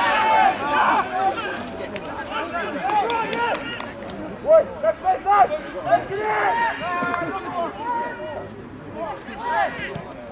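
Rugby players shouting short calls to each other across the pitch during open play, several voices overlapping, with the loudest shouts about halfway through.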